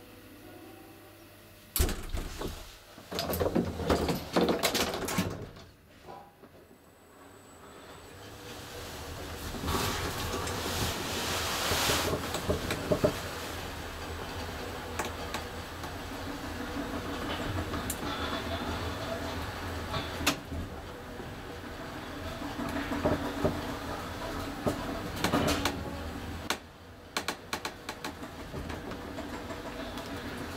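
Traction elevator heard from inside the car: a series of clunks and knocks, then the steady running noise of the car travelling in its shaft, which builds up, holds and cuts off abruptly near the end.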